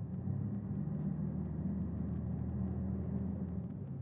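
Low, steady vehicle engine rumble that eases off slightly near the end.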